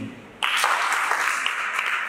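Audience applauding, starting suddenly about half a second in.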